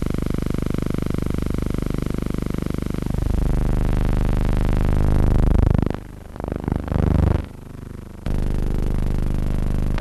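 Aircraft engine noise, louder than the talk around it. A steady multi-toned drone swells in the middle into a sweeping, whooshing change in tone, as a plane passing overhead makes. It dips and wavers about six seconds in, then settles back to a steady drone.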